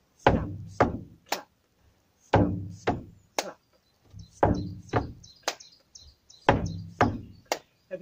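Boots stamping twice on a wooden board on a boat's deck, each stamp a heavy, hollow thud, followed by a sharp hand clap; the stamp, stamp, clap step-dance pattern repeats four times in a steady rhythm, about one cycle every two seconds.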